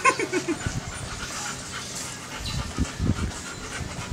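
Labrador retrievers panting and licking at close range, with irregular breathy, wet sounds.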